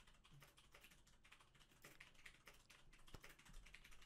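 Very faint, irregular clicking of a computer keyboard and mouse over near silence.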